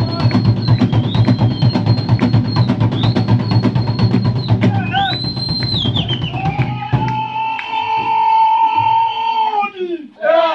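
Fast drumming for a Zulu war dance, with high whistle blasts of about a second each sounding over it. The drumming stops about seven seconds in, and one long high note is held for about three seconds.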